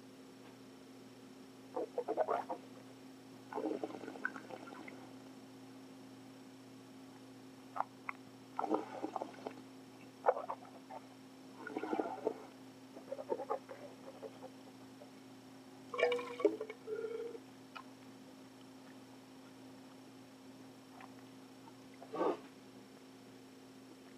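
A person slurping and swishing a mouthful of red wine, drawing air through it while tasting, in short, wet, irregular bursts every second or few seconds. A steady low hum runs underneath.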